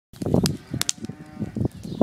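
Pallet-wood fire burning scrap copper wire, crackling with several sharp pops. A louder low sound comes in the first half second.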